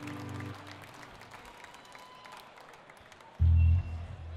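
Electric guitar through a stack of amplifiers: a low note dies away in the first half second, then after a quieter stretch with scattered crowd noise a loud low chord is struck near the end and stopped after about half a second.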